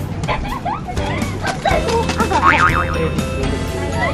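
Background music with a steady beat, with wavering, sliding notes about halfway through.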